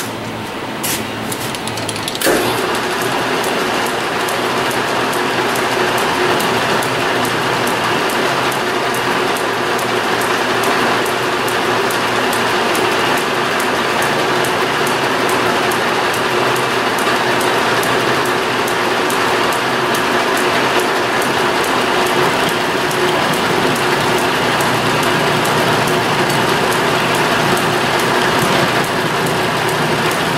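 Metal lathe starting up about two seconds in after a few clicks, then running steadily with a rapid, regular ticking while the tool turns down steel hex stock.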